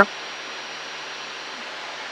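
Steady engine and airflow noise in a Cessna 172's cabin in flight: an even hiss with a faint low hum under it.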